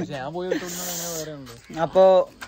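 Speech only: a man's drawn-out, sing-song voice, with a hiss over it about half a second in.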